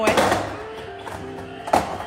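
A skateboard knocking on a hard tiled floor, one sharp hit at the start and another near the end, over steady background music.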